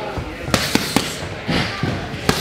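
Boxing gloves smacking focus mitts in quick combinations: three sharp pops in fast succession about half a second in, then another about a second later.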